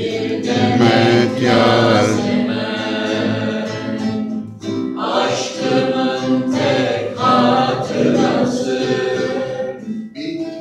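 A man singing a Turkish folk song solo, in long held notes, over acoustic guitar accompaniment.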